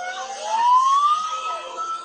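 Emergency vehicle siren wailing: its pitch is low at the start, rises over about a second, then holds high.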